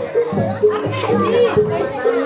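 Gamelan music from the jaranan ensemble, a repeating pattern of short pitched notes about two a second, with people's voices and shouts over it.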